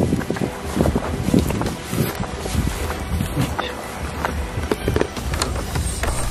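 Footsteps through dry grass, about two to three a second, with wind rumbling on the microphone.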